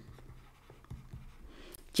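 Faint scratching and light ticks of a stylus writing on a tablet screen, with a few small taps about a second in and near the end.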